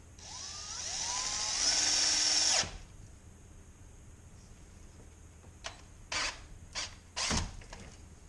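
Power drill with a quarter-inch bit drilling out a stripped bolt hole in an engine block to take a Heli-coil thread insert: one run whose motor pitch rises as it spins up, stopping sharply about two and a half seconds in, then four short bursts of the trigger near the end.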